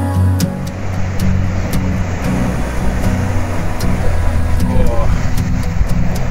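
Ocean surf breaking on a rocky shore: a steady rushing roar of large waves, with soft background music continuing underneath.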